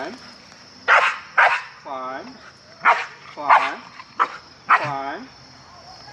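A dog barking: a string of short barks spread through the few seconds, with brief pauses between them.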